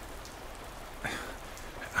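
Rain sound effect: steady, even rainfall.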